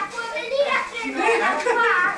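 Several people talking over one another, with children's voices among them.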